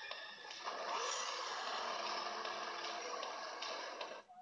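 A steady rushing noise with a few faint held tones from the animated clip's soundtrack, stopping suddenly near the end.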